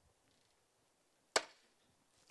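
Near silence broken by one short, sharp click about a second and a half in.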